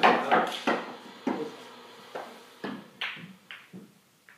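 Pool balls clicking against one another in a series of sharp knocks that come irregularly and grow quieter.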